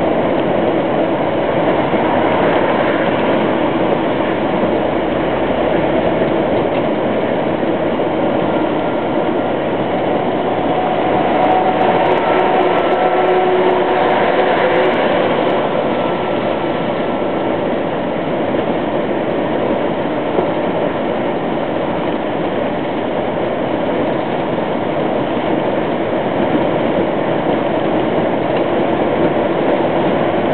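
Steady engine and road noise inside a truck cab while driving at motorway speed.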